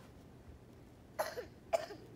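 Two short coughs, about half a second apart, a little over a second in.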